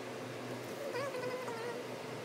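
A short, wavering, high-pitched call, about a second long, starting about a second in, over a steady low hum.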